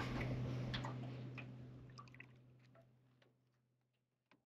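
Faint background sound on a boat sitting on the water: a steady low hum with a few small ticks and drips, fading out to near silence after about two seconds.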